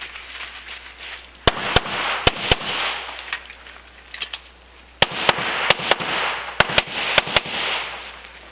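Pistol fired in quick pairs of shots, double taps: two pairs about a second and a half in, then after a pause of about two and a half seconds, four more pairs in quick succession.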